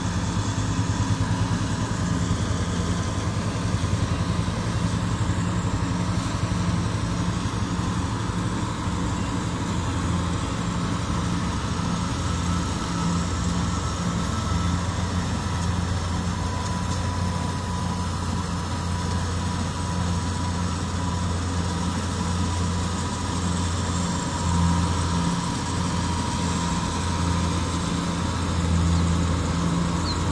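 Kubota combine harvester's diesel engine running steadily as it harvests rice: a continuous low drone with a faint high whine over it.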